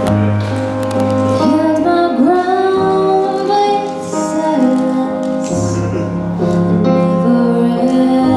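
A woman singing live into a handheld microphone over a recorded backing track of held chords. Her voice comes in about a second and a half in, with notes that slide up between phrases.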